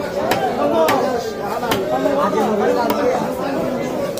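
A cleaver chopping through a bhetki (barramundi) fillet onto a wooden log chopping block: about five separate sharp chops at uneven intervals, over a steady background chatter of voices.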